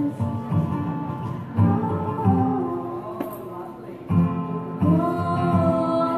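Acoustic guitar strummed in a steady rhythm while a woman sings, in a live solo performance.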